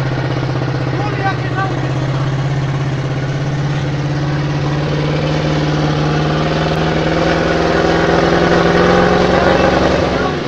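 Engine of a heavily loaded old truck running under load while its wheels work through deep mud; it swells and rises in pitch over the last couple of seconds.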